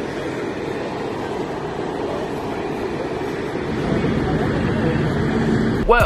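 City street ambience picked up by a phone: steady traffic noise with indistinct voices, getting a little louder toward the end.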